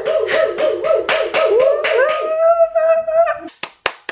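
A woman laughing in rapid high-pitched pulses that rise into one long held note. About three and a half seconds in, this gives way to quick hand clapping.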